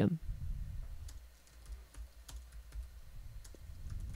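Typing on a computer keyboard: a run of irregular light key clicks, a few each second, over a faint low rumble.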